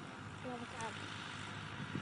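Faint, brief fragments of speech over a steady low hum.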